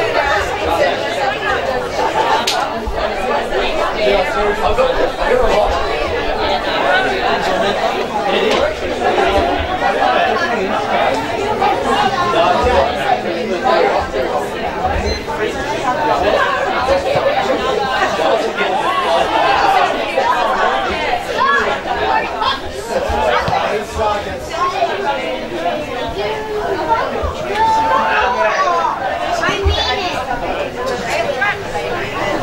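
Spectators' chatter at a local football ground: many overlapping voices talking steadily, none of them clear.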